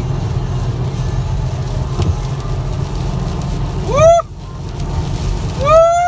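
Steady low rumble of road and engine noise inside a car driving on a highway. A person whoops "Woo!" loudly twice, about four seconds in and again near the end.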